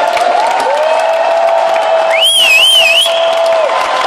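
A large crowd cheering and clapping, with a long steady held note running through it and a short warbling whistle riding above it about halfway in.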